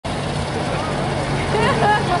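Street traffic with a steady low engine hum, and people's voices rising and calling out in the second half.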